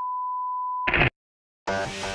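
Steady 1 kHz broadcast test tone behind a 'please stand by' colour-bar card, cut off about a second in by a short burst of noise. Then half a second of dead silence, and a loud rush of noise begins near the end.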